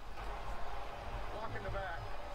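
Faint TV broadcast commentary from the football highlights playing underneath, a man's voice over a low steady hum.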